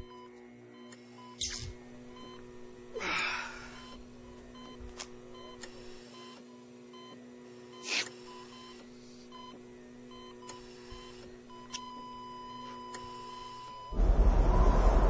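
Electronic intro sound design: a steady hum of held tones under an on-and-off beeping tone, with whooshing sweeps about one and a half, three and eight seconds in. Near the end the beep turns into one held tone.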